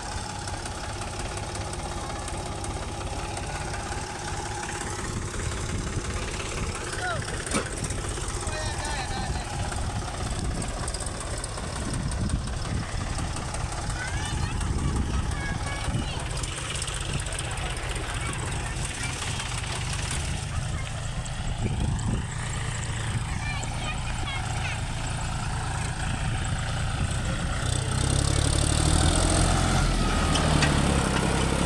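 Three-cylinder diesel tractor engines running with a steady low rumble: a Mahindra 275 DI XP hauling a loaded trailer, then a John Deere 5050 D, whose engine is louder near the end as it comes close.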